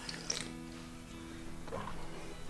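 Quiet background music with a few steady held notes, and a short sip from a drink can near the start.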